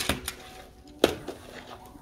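Two sharp clicks about a second apart, with lighter tapping between, as school supplies are handled and set down on a table.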